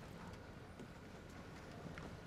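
Faint background ambience with a few soft, scattered ticks; no speech.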